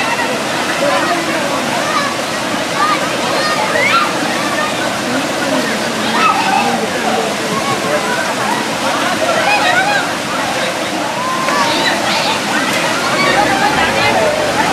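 Many voices talking, calling and laughing over one another, over a steady rush of flowing water, with some sloshing as people move through the pool.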